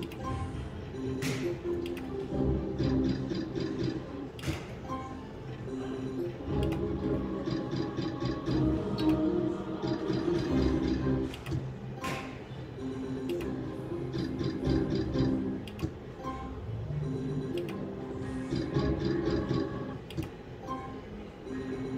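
Novoline Book of Ra slot machine playing its game music during free spins, with repeated ticking from the spinning reels and a few sharp clicks.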